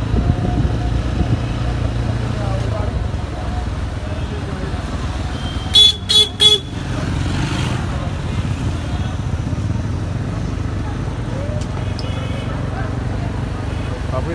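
Street traffic with motor vehicle engines running steadily, and a vehicle horn giving three short beeps in quick succession about six seconds in.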